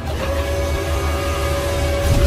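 Cinematic intro sound effect: one steady held tone over a deep rumble and hiss.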